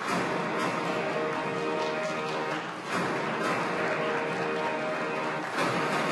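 Music that starts abruptly and then runs on at a steady level.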